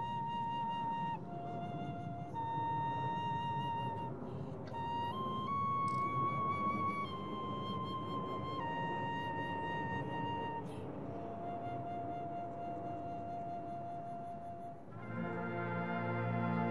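Solo flute played into a microphone, a slow melody of long held notes, one at a time. About fifteen seconds in, a fuller sustained chord comes in under it.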